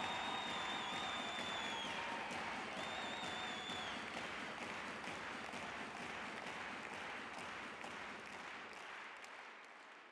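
A large conference audience applauding, the clapping slowly dying away. In the first four seconds two high, steady tones are held over it, one long and one shorter.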